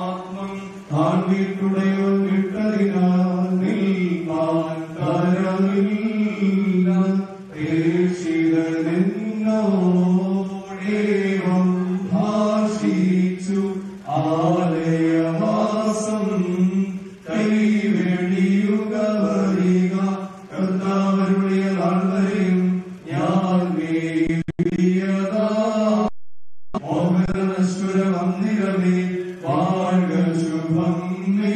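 Orthodox priest chanting a funeral hymn over a microphone: a male voice in a melodic chant sung in short phrases with brief breaths between them. The sound cuts out completely for a moment near the end.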